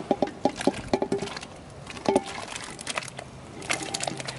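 Diced potato chunks tumbling from a stainless steel bowl into a large cauldron of boiling soup. Quick runs of splashes and knocks with short metallic clinks come in the first second, again about two seconds in, and near the end.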